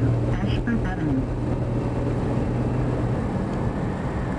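Car cabin noise while driving: a steady low engine hum that fades about three seconds in, over road noise.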